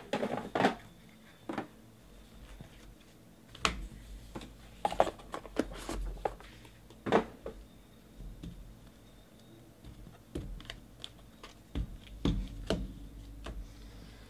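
Plastic trading-card holder and card box handled by hand on a table: irregular clicks, taps and light knocks of hard plastic, with some low bumps against the table.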